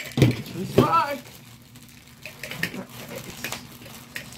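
Hands handling a metal collectible soda can and packaging: a dull knock just after the start, then scattered light clicks and rustles. A brief vocal sound comes about a second in.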